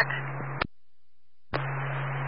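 Scanner audio of a fire dispatch radio channel between transmissions. Open-channel hiss with a steady hum ends in a sharp squelch-tail click as the dispatcher unkeys, about half a second in. After a short dead gap, the next radio keys up with the same hiss and hum about a second and a half in.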